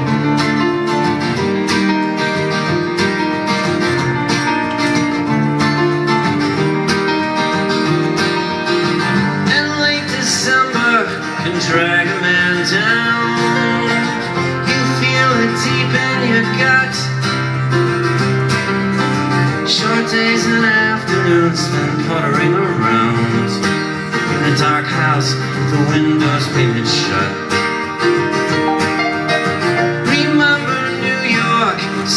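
Live acoustic guitar strumming with piano in a mid-tempo pop song, and a male voice singing over parts of it.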